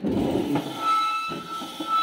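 Rustling and handling noise as the recording phone and papers are moved, followed by a steady high-pitched whistle-like tone that holds for about two seconds.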